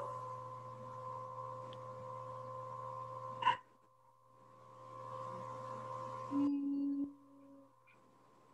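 Steady electrical hum and whine with hiss from an open microphone on a video call. It cuts out suddenly about halfway through and fades back in a second later. A short, low, steady tone sounds near the end.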